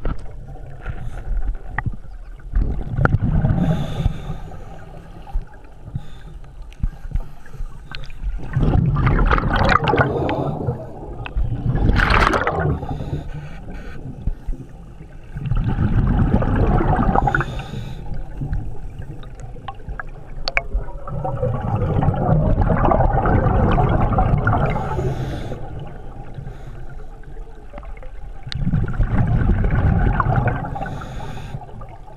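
Scuba regulator breathing underwater: a gurgling rush of exhaled bubbles about every five or six seconds, in a steady breathing rhythm, with quieter stretches between.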